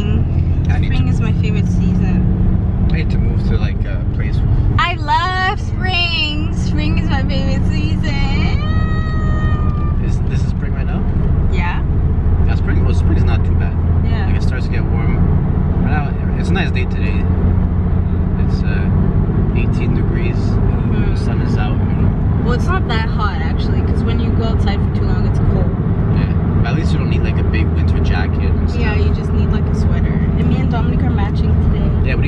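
Steady low rumble of a car driving, heard from inside the cabin, with no change in pace.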